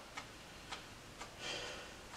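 Faint, regular ticking at about two ticks a second, like a clock in the room, with a short soft breathy sound about midway.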